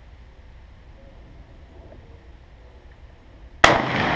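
A single M1 Garand rifle shot near the end: a sudden sharp report with an echo that trails off slowly. Before it, only a quiet, steady outdoor background.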